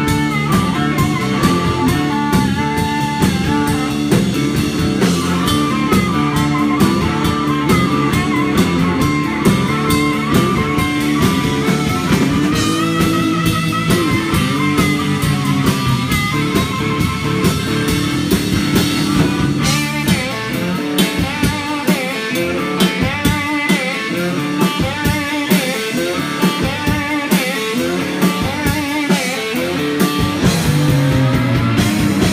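Live blues band: amplified harmonica played into a cupped handheld microphone, with bending, wavering notes over electric guitar and drum kit. About two-thirds of the way in, the bass end thins out and the backing turns sparser and choppier.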